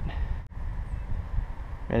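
Wind buffeting the microphone: an uneven low rumble, with a brief dip about halfway through.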